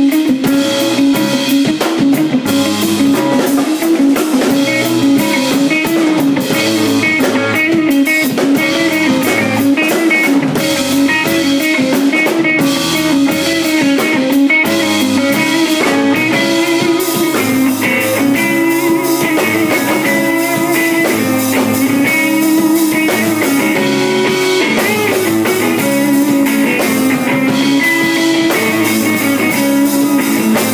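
A live instrumental rock jam with electric guitars, a Nord keyboard and a drum kit, playing loudly without a break.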